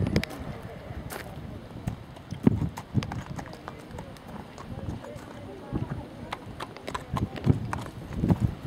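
A horse's hoofbeats: a scatter of short, uneven knocks, with faint voices behind.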